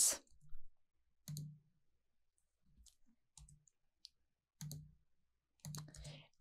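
Faint, scattered clicks of a computer mouse, about six spread over the few seconds, as line points are picked in the drawing.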